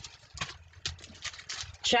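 Pages of a Bible being leafed through: a quick, uneven series of light paper flicks and taps while a passage is looked up.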